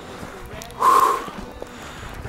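A man's short, heavy exhale, a breathy huff about a second in, from the exertion of hiking uphill.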